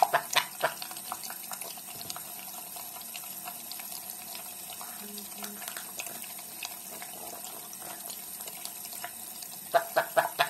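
Tap water running steadily into a sink, with a sun conure's rapid series of short, laugh-like calls at the very start and again near the end.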